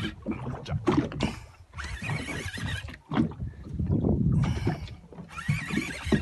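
Wind and water noise on a small open boat at sea, coming in long rushing gusts.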